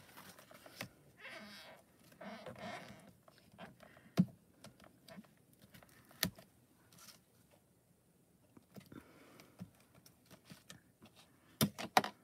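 Scattered sharp clicks and taps of clear acrylic stamps and tools being handled and set down on a stamping platform and glass mat. The loudest come about four seconds in, about six seconds in, and as a pair just before the end.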